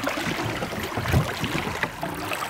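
Water splashing and sloshing against the side of a boat as a musky is lowered into the river and held in the water. There is an irregular run of splashes, loudest about a second in.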